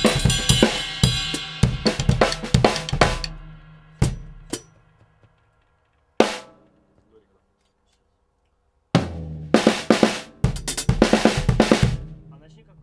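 Acoustic drum kit played in short improvised fills: a dense run of drum and cymbal strikes for about three seconds, a few single hits, a pause of about two seconds, then another fast fill near the end.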